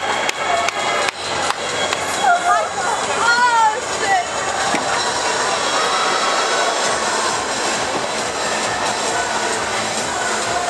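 Spectators shouting and cheering over a steady crowd din in a large indoor arena, with several loud shouted calls about two to four seconds in.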